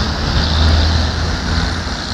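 Road traffic passing close by, with a deep engine rumble that swells about half a second in and then eases off.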